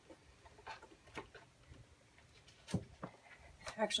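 Faint, scattered rustling and light knocks of paper and small objects being handled while someone looks for a piece of paper, the loudest knock about two and three-quarter seconds in.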